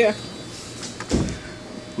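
Handling noise from the phone recording as it is moved: a brief low rumble about a second in, over a faint steady hum.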